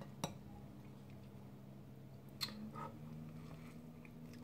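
Faint sounds of an egg sandwich being picked up from a plate and bitten into: a soft tap near the start, then a couple of small crunches a little past halfway, over a low steady hum.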